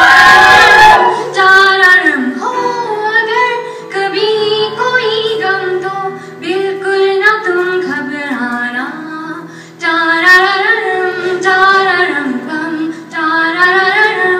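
A woman singing a melody live into a microphone over sustained electronic keyboard chords. A brief loud hiss sounds in the first second.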